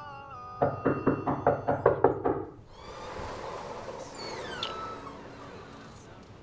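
Rapid knocking on a door: about eight quick, hard knocks in two seconds.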